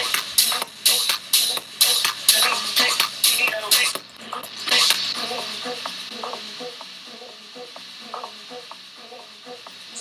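A 126 BPM techno track playing through DJ software, with a drum hit on every beat, about two a second. About four seconds in, the music drops to a quieter, sparser section.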